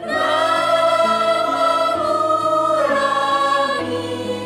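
Mixed choir singing a medley of Indonesian regional songs: a loud full chord comes in at the start and is held for nearly three seconds, then the voices move to new notes about three seconds in.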